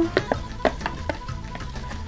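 Background music, with a run of short, irregular clicks and taps as the last drained black beans are tipped from a plastic container into a pan.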